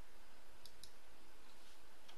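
Two faint clicks at a computer, about a fifth of a second apart, over a steady hiss.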